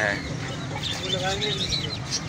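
Many caged birds chirping and calling together: a stream of short, high chirps over a few lower calls.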